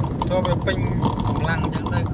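Steady low rumble of engine and road noise inside a moving car's cabin, driving on a wet road, under people talking.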